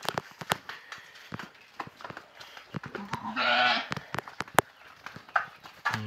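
A goat bleats once, a wavering call about three seconds in, with scattered sharp clicks and taps around it.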